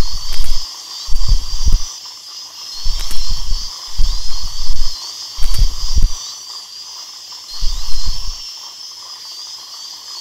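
Dental handpiece running with a steady, high-pitched, slightly wavering whine, working on a decayed tooth with water spray. Six short low pulses come about every second and a half, the last one well before the end.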